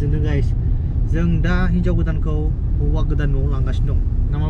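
People talking over a steady low rumble of the kind heard from a moving road vehicle.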